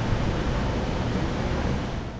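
Wind buffeting a camcorder's microphone outdoors: a steady low rumble with hiss.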